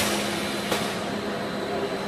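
Aluminium-tray packaging machine with a tray-turning device running: a steady mechanical hum with a faint high steady tone, and brief sharp noises at the start and about three-quarters of a second in.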